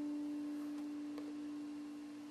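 A single electric guitar note, the D at the 12th fret of the fourth string, left ringing and slowly dying away as an almost pure tone.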